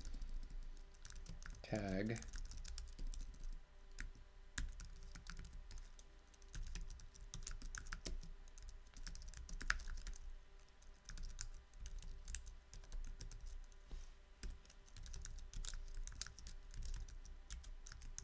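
Typing on a computer keyboard: a run of irregular keystroke clicks as a long command is entered.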